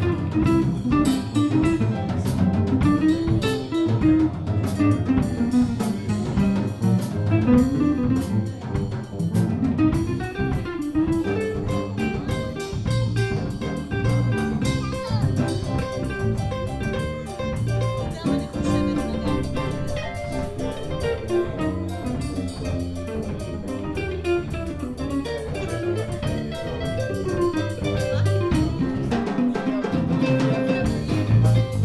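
Jazz combo playing live: archtop electric guitar, electric bass and drum kit with cymbals, a melodic line winding over a steady low end throughout.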